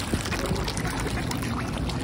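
Water splashing and churning steadily as a crowd of mallards and mute swans paddle and jostle at the shore's edge, with many small splashes and bill dabbles over a low rumble.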